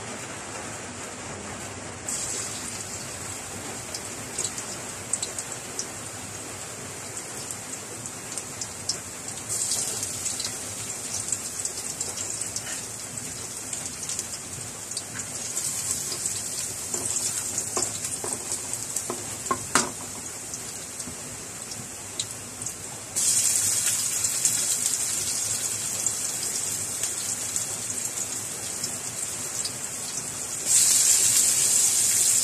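Chopped garlic sizzling in hot oil in a metal wok, the sizzle growing louder in steps, with a few clicks of a wooden spatula stirring against the pan partway through.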